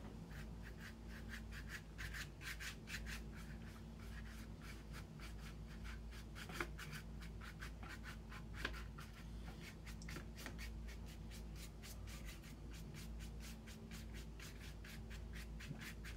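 Paintbrush scrubbing back and forth on watercolor paper, a faint, rapid rubbing of several short strokes a second, working ground cloves into wet ink and orange juice. A couple of light taps about six and eight and a half seconds in.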